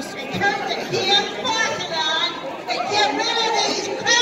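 Overlapping conversation of several people talking at once, the chatter of a crowd.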